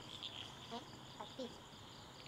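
Faint, steady chirping of crickets, with a few brief, faint voices.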